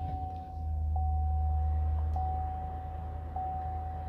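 2018 Chevrolet Tahoe's 5.3-litre V8 starting and running, heard from inside the cabin: a low engine rumble swells about half a second in, then eases off as it settles toward idle. A thin steady electronic tone from the dash sounds throughout.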